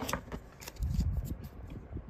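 Stiff plastic card holders clicking and sliding against each other as a stack of trading cards is handled. A few short sharp clicks come first, then a duller handling rustle about a second in.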